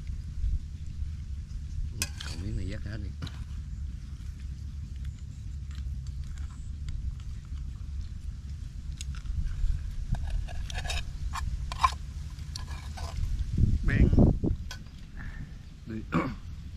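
Steady low rumble of wind on the microphone, with scattered light clicks of chopsticks against bowls and short bits of voice about two seconds in and, louder, near the end.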